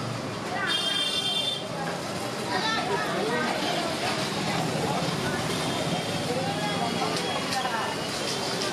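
Busy street ambience at a market stall: several people talking in the background with traffic running, and a brief high-pitched tone about a second in.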